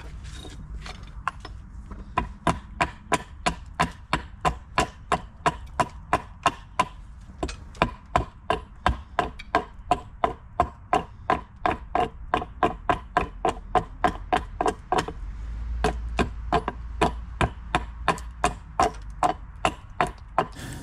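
Husqvarna hatchet chopping a hickory axe-handle blank: a steady run of sharp blows on the wood, about two to three a second, lighter at first and striking hard from about two seconds in.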